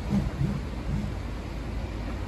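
Steady low rumble of a demolition site heard from across the street, with a long-reach excavator working and wind buffeting the microphone. Three short low hums come in the first second.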